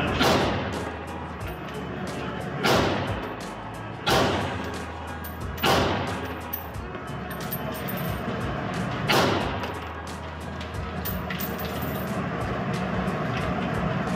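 Five single rifle shots fired at uneven intervals, each with a short echoing tail from the indoor range. Background music runs underneath.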